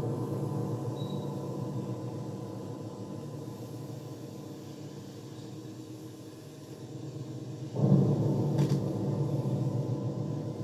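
Recorded programme played back from a Revox A77 reel-to-reel tape: two deep notes, each starting suddenly and dying away slowly, the second about eight seconds in.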